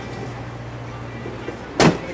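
Rear door of a Mercedes Sprinter van swung shut, latching with a single thump near the end, over a steady low hum.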